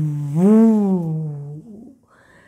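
A woman's voice imitating the wind: a long, breathy 'whoo' held on one note that swells up and back down about half a second in, then fades out near the end.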